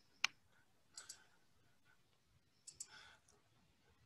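Near silence broken by a few small clicks: one sharp click a quarter second in, then fainter pairs of clicks about one and three seconds in.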